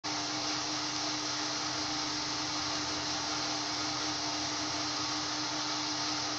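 A steady, even hiss-like rushing noise with a faint steady hum beneath it.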